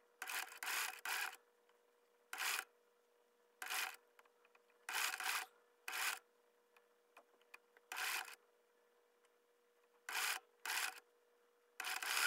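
Domestic sewing machine stitching through thick cotton mop strands in short start-stop runs, about nine brief bursts with pauses between as more strands are pushed under the foot.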